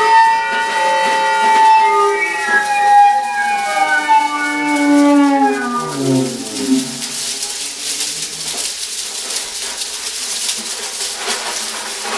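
Free-improvised music for saxophone and percussion: several sustained, howling tones slide slowly downward together, like a siren winding down. About six seconds in they give way to a rustling, clattering percussion texture of small rattles and scrapes.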